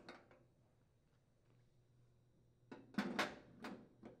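Metal gas-range burner parts being set down on the cooktop: after a quiet stretch, a quick run of four or five light clinks and scrapes starting a little under three seconds in, as a burner cap is seated on its base.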